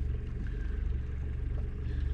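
Boat motor running steadily at low speed, about 2 knots, giving a low, even hum.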